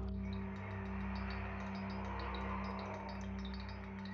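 Ambient drone soundscape: a steady low hum of held tones under an even hiss that swells and fades, with faint, quick high ticks flickering through it.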